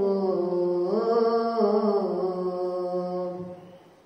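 A boy's voice chanting the Islamic call to prayer (azan), drawing out one long melodic held note that rises about a second in, then steps back down and fades out near the end.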